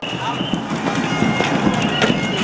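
Bagpipes playing held notes over dense crowd noise, with a few sharp knocks.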